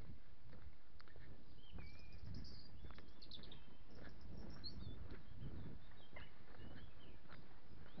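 Small birds chirping and whistling in woodland, a scatter of short high calls through the middle, over low rumbling noise from walking with the camera.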